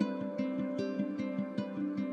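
Soft new-age background music on plucked strings, notes picked in a quick, even run of about five a second over a held low tone.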